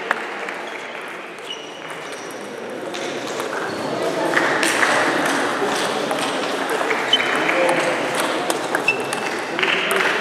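Table tennis ball clicking sharply off bats and the table during rallies, over the murmur of voices in a large hall that grows louder about halfway through.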